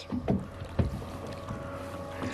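Boat at sea: a steady low rumble of wind and water against the hull with a faint steady hum, and a soft low knock a little under a second in.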